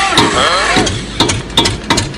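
A motor-like whirring with irregular sharp clicks, an engine or propeller sound effect as a man fitted with digital rotor blades lifts into the air. A voice with sliding pitch sounds over it in the first second.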